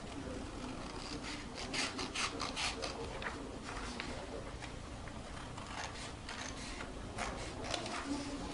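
Scissors cutting through printer paper in a run of short snips, with the paper sheet rustling as it is lifted and handled. The snipping comes in a dense cluster a second or two in and again near the end.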